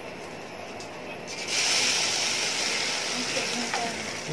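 Egg-and-vegetable omelette batter hitting hot oil in an aluminium pan: a sudden loud sizzle starts about a second and a half in and goes on steadily as the batter spreads and fries.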